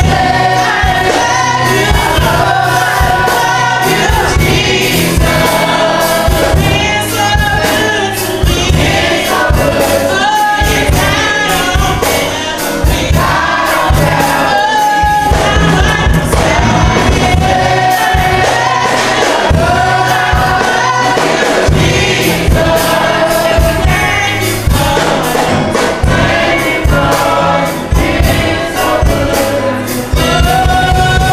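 Youth gospel choir singing in harmony, several voices together, over accompaniment with a steady low beat.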